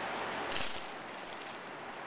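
A brief rustle of waxflower stems and foliage about half a second in, as the bunch is set down on a digital scale, followed by a faint steady hiss.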